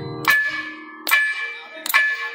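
Thavil solo percussion at a sparse moment: three sharp strokes about 0.8 s apart, each with a bright metallic ring that fades, with no deep bass strokes.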